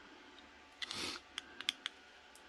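Handling of a small plastic Bluetooth shutter remote: a brief rustle, then a few faint, sharp plastic clicks in quick succession.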